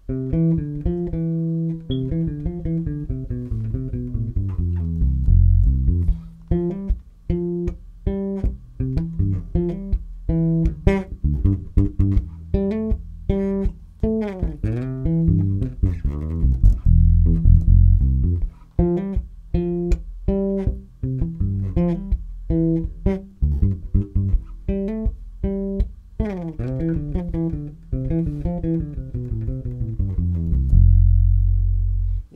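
Solo electric bass guitar played fingerstyle, a slow bassline of plucked low notes with short muted clicks between them and no metronome or backing.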